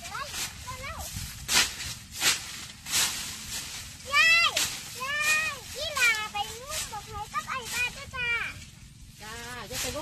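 High-pitched children's voices talking and calling out, mostly in the second half, with several short rustling noises earlier.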